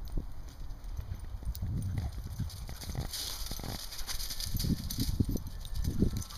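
Belgian Sheepdogs running and chasing on frozen grass: irregular low thuds of their paws, with a short rustle about three seconds in.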